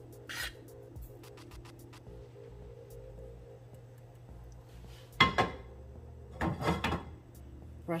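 Kitchen handling noises at a foil-lined sheet pan: one sharp scrape about five seconds in, then a longer rasping rub a second later.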